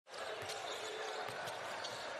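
A basketball being dribbled on a hardwood court, a few faint bounces over the steady murmur of an arena crowd.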